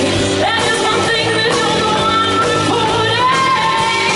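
Live rock band playing: a woman singing sustained notes over electric guitar and drums.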